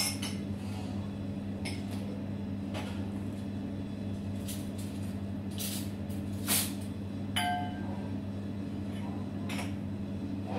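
Steady low machine hum of kitchen equipment, with a few short clinks and knocks of kitchenware scattered through it. The loudest comes a little past halfway, and one soon after rings briefly like metal or glass.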